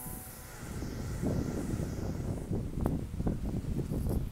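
Wind buffeting the microphone outdoors, an uneven low rumble, with some rustling and a couple of faint clicks near the end.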